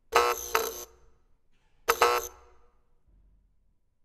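Two loud, dense chord blasts from a contemporary chamber ensemble with live electronics, about two seconds apart, each under a second long and fading quickly; a second accent strikes inside the first blast.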